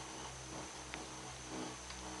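Steady low hum inside a moving cable-car gondola, with a couple of faint clicks about a second apart.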